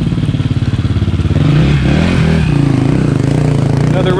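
A dirt bike's engine running as it rides past close by, its note dipping and rising again about halfway through.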